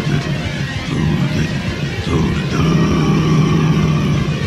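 Lo-fi raw black metal/noise recording: a dense, continuous wall of distorted noise over a low droning rumble, with swooping sweeps in the middle range. A held higher tone comes in about two and a half seconds in.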